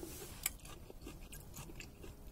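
Faint chewing of a mouthful of firm, not-yet-ripe Forelle Alessia pear, hard and crunchy, with a sharper crunch about half a second in.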